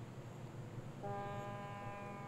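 Low steady hum and hiss of an old film soundtrack, then, about a second in, one held musical note sets in as background music begins.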